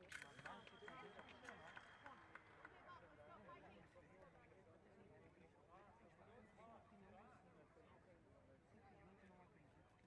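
A fencing scoring machine sounds a steady high tone for about two seconds as a sabre touch lands, over a cluster of sharp clicks. Faint voices carry on after it.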